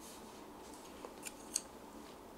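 Three light clicks a little after a second in, the last the sharpest: wooden chopsticks being picked up and clicking together, over quiet room tone.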